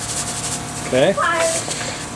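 Kosher salt shaken from its box onto sliced onions and butter in a cast-iron skillet: a light, grainy rustle in the first half second over a steady hiss.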